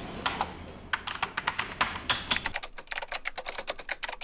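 Typing on a computer keyboard: a run of key clicks, sparse at first, then fast and dense in the second half.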